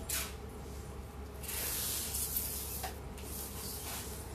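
Cloth rustling and swishing as unstitched suit fabric is lifted and shaken out: a short swish at the start, a longer one of about a second and a half in the middle, and a shorter one near the end. A steady low hum runs beneath.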